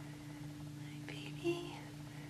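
A brief, soft whispered voice about a second in, over a steady low electrical-sounding hum.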